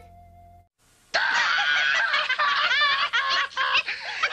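Cartoon-style music tails off, and after a brief pause several character voices laugh and snicker together over light music, starting about a second in.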